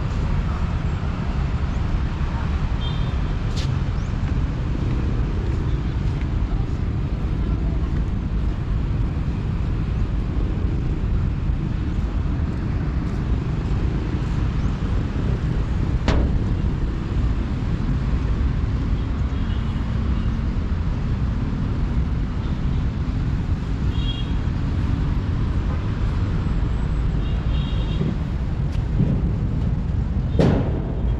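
Outdoor urban riverside ambience: a steady low rumble of distant traffic, with a few short high chirps scattered through and a single sharp click about halfway through.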